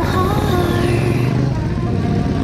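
Supermoto motorcycle engine running and revving through a hairpin bend, its pitch rising and falling with the throttle.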